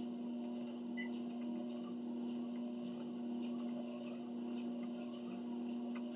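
Treadmill running with a steady motor hum, and faint taps of footsteps on the moving belt.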